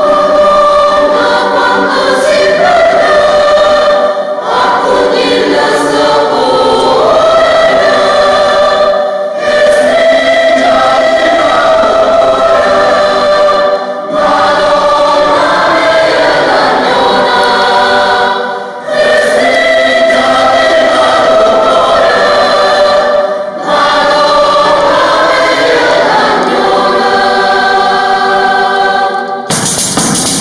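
Mixed choir of women's and men's voices singing a polyphonic piece, in phrases of about four to five seconds with brief pauses between them.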